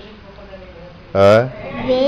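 A short, loud vocal call in a low adult voice about a second in, a single pitched sound lasting about a third of a second, with a child speaking near the end.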